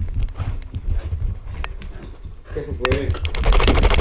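A dog running through a house after a bath, recorded from a camera strapped to its back: rapid clicks and knocks of claws and footfalls on the floor, with the mount rattling. A short wavering vocal sound comes about two and a half seconds in, and a louder, busier rush of noise fills the last second.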